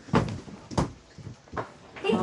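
Three short knocks inside a small caravan, each a bit under a second apart, like cupboard or door panels being knocked or shut.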